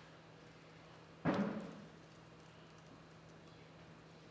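A single dull thump about a second in, with a short ringing decay, over a faint low steady hum.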